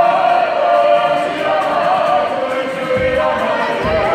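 A group of men and women singing a Māori song together, with acoustic guitar accompaniment. A couple of low thumps come in near the end.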